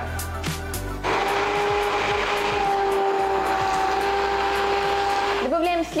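Hand blender running at a steady speed for about four seconds, puréeing boiled pumpkin with fried bacon into a cream soup, then cutting off.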